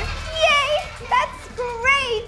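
Children's voices giving several short, high-pitched calls and giggles that rise and fall in pitch, over a low steady hum.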